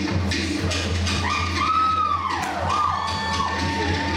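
Polynesian dance music of fast drum and wood-block strikes. From about a second in, several gliding whoops rise and fall over the drumming for two or three seconds.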